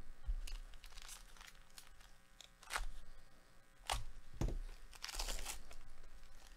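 Plastic wrapper of a Panini Donruss basketball trading-card pack being torn open by hand: crinkling, a few sharp crackles, a dull knock, then one loud rip near the end as the wrapper comes apart.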